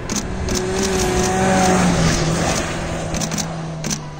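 Suzuki Jimny rally car's engine running hard as it drives past at speed. The note is loudest and slightly rising around the middle, then drops in pitch about two seconds in as the car goes by.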